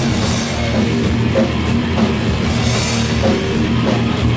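A live heavy punk band playing an instrumental passage with no vocals: drum kit and distorted guitar and bass, with cymbal washes shortly after the start and again near three seconds in.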